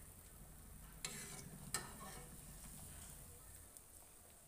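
Faint sizzle of gram-flour fafda frying in oil in a pan, with steel tongs clicking twice, about a second in and again a little under a second later.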